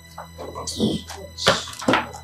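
Two sharp thunks of items being set down on a wooden desk, about a second and a half in and again just before the end. Before them comes a short rustle of a paper gift bag, with a few muttered words.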